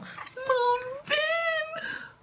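A man's high-pitched, drawn-out squeals of delight, two of them in a row, the second slightly higher and longer.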